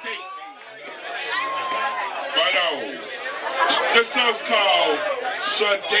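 Several people talking at once: crowd chatter, with no music playing.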